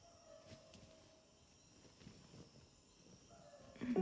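Faint night ambience of steadily chirring insects such as crickets, with a few soft rustles. Music begins to rise right at the end.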